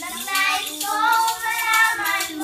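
Young girls singing a Christmas carol together, with a small hand-held rattle shaken in time to the beat.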